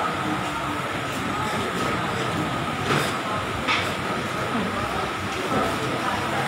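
Steady background din of a busy hawker centre: indistinct voices and a continuous hum, with two sharp knocks about three seconds in and again half a second later.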